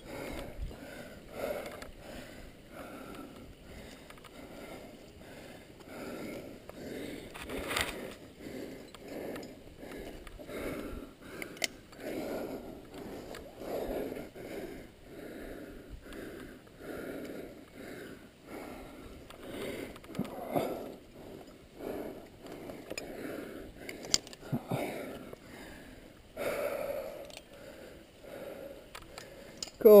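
A climber breathing hard and rhythmically in short, repeated breaths close to the microphone while pulling through the moves, with a couple of sharp clicks from the gear.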